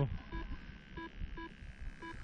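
A paragliding flight variometer gives a string of short electronic beeps, about one every half second, over low wind rumble on the microphone.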